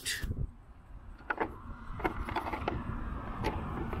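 Road traffic noise, a steady rumble that swells as vehicles pass, with a few light clicks and knocks from handling the wooden birdhouse.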